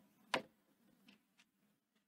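Chalk tapping on a chalkboard as it is written with: one sharp tap about a third of a second in, then two faint ticks a little after the middle.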